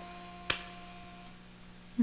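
Two sharp clicks, one about half a second in and one near the end, over a faint steady hum, with a faint pitched note ringing through the first second.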